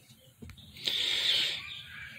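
A 6-32 machine screw being tightened through the plastic steering-wheel hub of a ride-on toy truck: a faint click, then about a second of high scraping squeak as the screw is turned tight.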